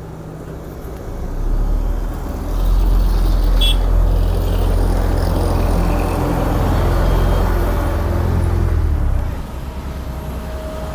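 Cat CB10 tandem asphalt roller's diesel engine running as the machine passes close by, a deep steady rumble that builds about a second in and falls away near the end.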